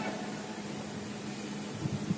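A pause in speech filled with steady background hiss and a faint, steady low hum.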